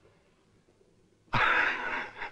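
About a second of near silence. Then, near the end, a woman lets out a sudden loud, breathy laugh.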